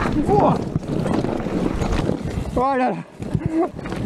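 Vitus Sommet 29 enduro mountain bike descending fast over loose rock and gravel: tyres crunching, the bike rattling and knocking over the stones, with wind rushing over the microphone. A short exclamation, "oh là là", comes near the end.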